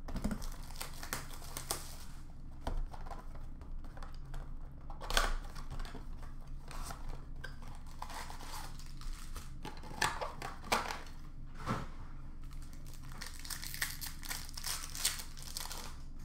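Crinkling and tearing of Panini Prizm basketball card pack wrappers as packs are handled and torn open, with irregular sharp crackles.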